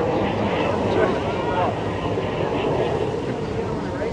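Indistinct voices of people talking, not clear enough to make out words, over a steady low rumble of outdoor street noise.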